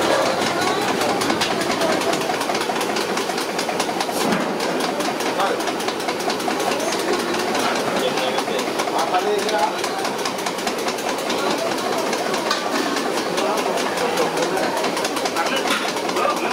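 Indistinct background voices over a steady, fast, rhythmic mechanical clatter.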